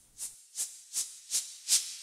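GarageBand 'Noise Sweep' synth patch playing alone: a run of short hissing white-noise notes stepping down in pitch, about three a second, getting louder through the run.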